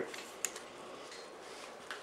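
A single light click about half a second in and a fainter tick near the end, from the parts of a disassembled Remington 870 pump-action shotgun being handled.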